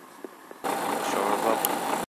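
Faint outdoor background, then, just over half a second in, a sudden jump to the much louder, steady sound of a lorry's engine idling.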